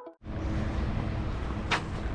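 The last note of a chime cuts off, then steady outdoor background noise with a heavy low rumble, and one sharp click near the end.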